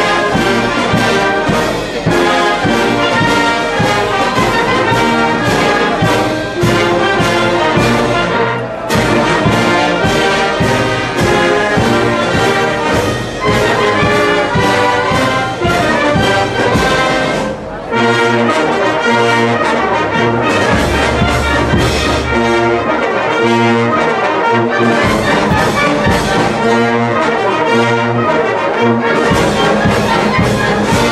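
Live concert band playing, with the brass to the fore. The music drops back briefly twice, about nine seconds in and just before eighteen seconds.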